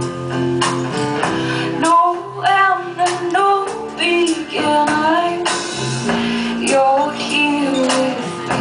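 A woman singing live over her own strummed acoustic guitar. The guitar chords run throughout, and from about two seconds in she sings long, gliding notes.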